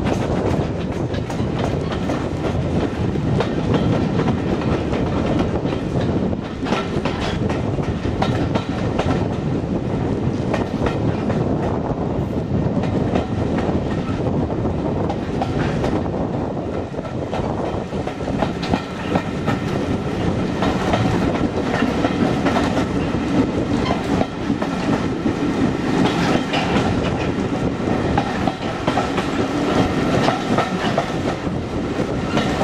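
Passenger carriage of a steam-hauled heritage train running along the line, with a continuous rumble and wheels clicking over the rail joints, heard from an open carriage window.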